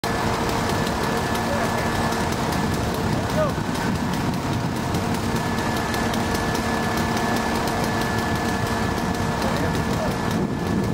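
Idling vehicle engines running steadily, with indistinct voices mixed in.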